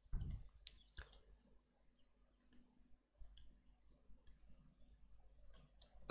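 Faint computer mouse clicks over near silence: a few sharp clicks in the first second, then scattered softer ticks.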